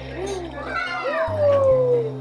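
A dubbed-in dinosaur cry sound effect: a high, meow-like screech that rises and then glides slowly down in pitch, loudest in the second half. Steady low background music runs underneath.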